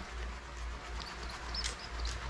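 Magic sponge (melamine foam) rubbing the glass of a dive mask, a scrubbing sound with a few faint high squeaks, about a second in and again near the end.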